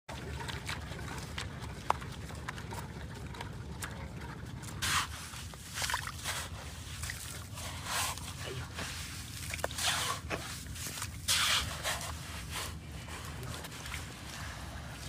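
A spade cutting and scraping into wet sand: about five short strokes, each under a second, after the first few seconds, over a low steady rumble.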